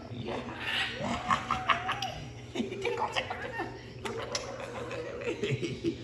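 Laughter and indistinct human voices.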